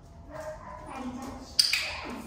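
A dog vocalising in short pitched sounds, with a sudden loud, sharp sound near the end.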